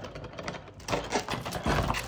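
Plastic shrink wrap crinkling and crackling irregularly as hands pull it off a cardboard box.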